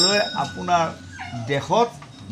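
A man's voice reciting in a sing-song delivery, its pitch rising and falling.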